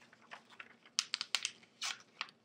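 Fingers and nails tapping and rubbing on a glossy magazine page: a quick run of about five sharp taps about a second in, then a brief papery swish near the end.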